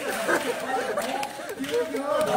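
Speech only: crosstalk performers talking into stage microphones.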